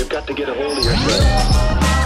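Background music with a steady bass and a singing voice, over a basketball bouncing on a wooden gym floor.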